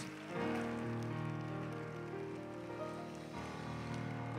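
A stage keyboard playing soft, sustained chords, with faint applause from the congregation beneath it.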